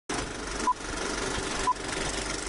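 Test-card intro sound effect: a steady hiss like television static, with two short high beeps about a second apart.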